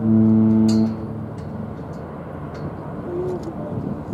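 A cruise ship's deep horn giving a short blast of about a second, one of the whistle salutes exchanged between passing cruise ships. It follows an identical blast just before, and then a low steady harbour rumble remains.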